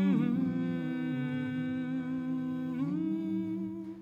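Male a cappella group humming sustained chords with no words. The chord shifts right at the start and again near three seconds in, and the humming fades away at the very end.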